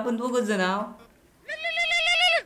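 Two wavering, bleat-like cries: a short one at the start, then a higher-pitched one held for about a second that ends in a falling glide.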